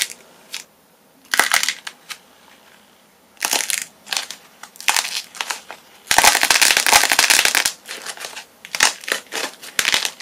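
A handmade clay figure cracking and crunching as hands squeeze and crush it. The crackling comes in short bursts, then a dense run of crackles about six seconds in that lasts over a second, then scattered crackles again.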